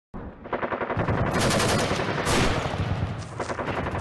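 Machine-gun fire sound effect: a rapid, continuous burst of automatic gunfire that starts about half a second in.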